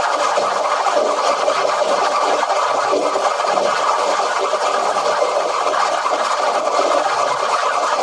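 Steady, harsh static-like noise from digitally distorted audio, with no tune or voice.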